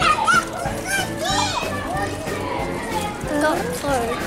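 Young children's voices chattering and calling out, with music playing underneath.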